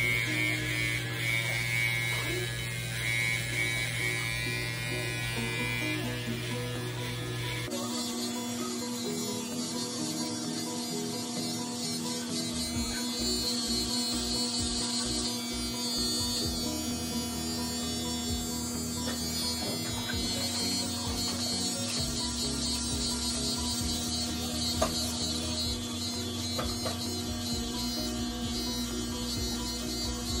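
Corded electric hair clippers buzzing steadily as they cut a child's short hair, with music playing underneath.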